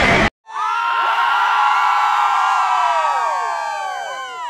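Edited-in cheering sound effect: many high voices hold a long cheer, then slide down in pitch and fade out.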